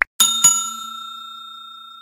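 A short click, then a bell sound effect struck twice in quick succession and left ringing, fading slowly: the notification-bell chime of a subscribe-button animation.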